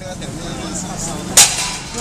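A single sharp snap about one and a half seconds in, over steady low street noise.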